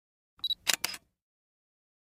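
Short logo sound effect: a brief high tone, then two quick sharp clicks, all within the first second.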